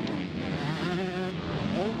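Motocross bike engines running on the track, their pitch wavering up and down as the riders work the throttle.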